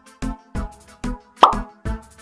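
Background electronic music with a steady beat, about two strokes a second. About 1.4 s in, a single pop sound effect stands out over it and is the loudest thing heard.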